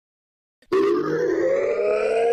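Silence, then about two-thirds of a second in a synthesized intro effect starts abruptly: several tones rising slowly and steadily in pitch together, a riser sweep.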